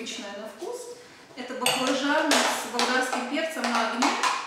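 Women talking at a table while eating, with light clinks of cutlery on dishes.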